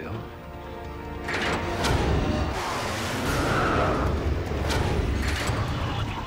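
Science-fiction TV soundtrack: dramatic music with sustained notes, then from about a second in a loud low rumble of a spaceship's engine blast and effects, with a few sharp hits.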